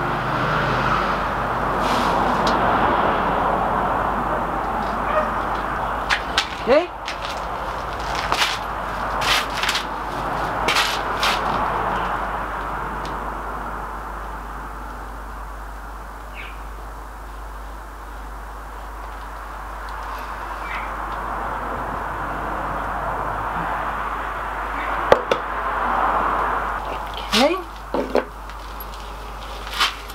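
Scattered sharp clicks and knocks from tools and a wooden moulding flask being handled, over a steady rushing background noise that swells and fades slowly.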